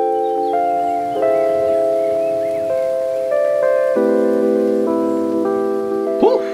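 Background music: held chords of steady notes, changing every second or so.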